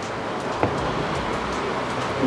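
Steady hiss with one light tap about two-thirds of a second in, from hands handling a cardboard smartphone box.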